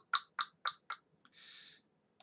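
A run of five sharp clicks, evenly spaced about four a second, then a short soft hiss.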